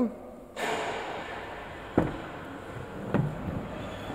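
Rustling handling noise with two sharp clicks, one about two seconds in and one about three seconds in, as a car door is unlatched and opened.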